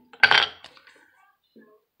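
A metal leather-stamping tool set down on a granite slab: one short clink about a quarter second in, then faint handling sounds.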